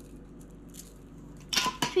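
Quiet room tone with only faint small sounds, then a voice starts speaking suddenly near the end.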